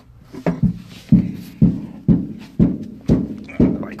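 Footsteps thudding about twice a second, starting about a second in, as the person holding the camera walks.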